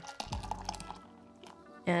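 Beer pouring from a can into a glass, the pour tailing off and fading about halfway through.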